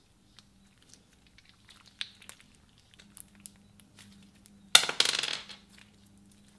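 Clear slime full of red plastic gems being stretched and squished by hand: scattered small clicks and crackles, then a louder burst of crackling and clicking lasting under a second, about three-quarters of the way through.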